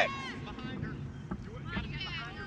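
Steady low wind rumble on the microphone, with faint distant voices calling out now and then.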